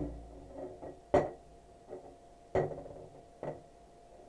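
Plastic wrestling action figures being handled and set down in a toy wrestling ring: faint fumbling with three sharp clicks, the loudest a little over a second in.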